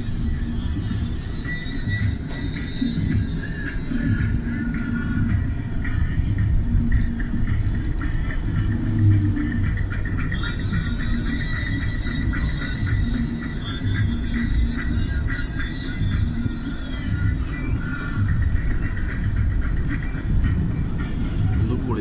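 Steady road and engine rumble heard inside the cabin of a moving vehicle.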